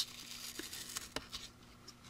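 Masking tape being peeled slowly off a painted plastic model car body: a faint rustle with a few small ticks.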